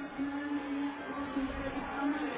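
Stadium crowd noise during the closing stage of a 1500 m race, with a steady low held tone running through it.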